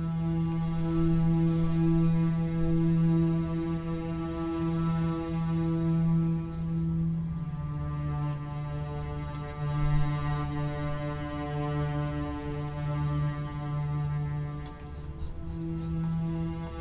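Sampled chamber strings playing on their own, holding a low sustained note drenched in a very wet reverb. The held pitch steps down slightly about halfway through.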